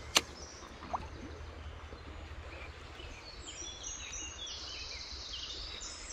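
A single sharp click from a baitcasting reel just after the start, over a steady low background hum. From about halfway, a bird sings a run of short high notes.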